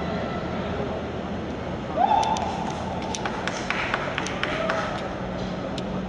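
Stadium ambience: a steady background murmur, with a single call or shout about two seconds in that rises and then holds for about a second. After it come scattered short, sharp taps.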